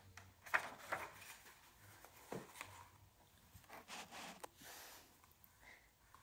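Paper book pages being turned and handled, a few soft rustles and light taps spread over several seconds, with a faint low hum beneath.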